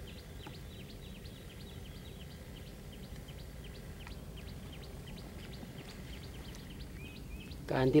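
Small birds chirping over and over: short, high, downward chirps, several a second, over a low steady background rumble.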